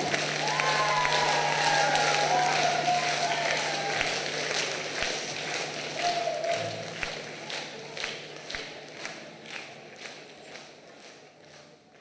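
Concert-hall audience applauding, with voices over it at first; the clapping settles into rhythmic clapping in unison, about two claps a second, and fades out steadily towards the end.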